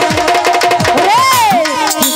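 Live Baul folk music: hand-drum strokes that slide down in pitch under quick repeated notes from a melody instrument. About a second in, a voice sings a long rising-and-falling cry.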